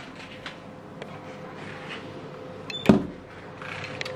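Faint shuffling and small clicks, then a door handle and latch clicking and the door opening with one sharp knock about three seconds in.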